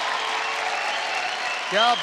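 Studio audience applauding, with a voice calling out loudly in rising-and-falling exclamations near the end.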